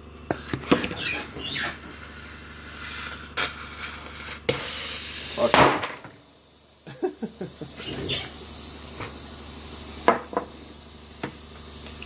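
A homemade CO2 airsoft grenade of rubber inner tube and hose squeaking and creaking as it is squeezed hard between two thumbs to drive the puncturing pin into the CO2 cartridge, with scattered clicks and a short louder rush of noise about five seconds in.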